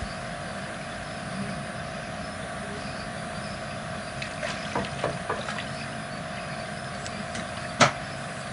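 Steady background hum and hiss, with a few faint clicks around the middle and one sharp click near the end.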